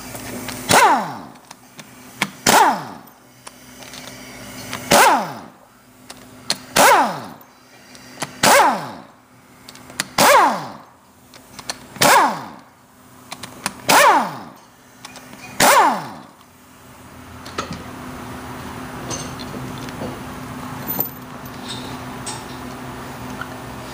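A hand-held power driver, most likely air-powered, running in about nine short bursts roughly two seconds apart, each falling in pitch as the motor winds down, as it backs out the cap screws holding the gear pump's end cap. A steadier hiss follows near the end.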